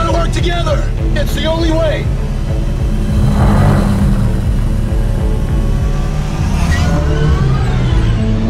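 Sci-fi light cycle sound effects: synthetic engine whines that glide up and down, and a rushing pass-by whoosh about three seconds in, over a steady electronic music bed.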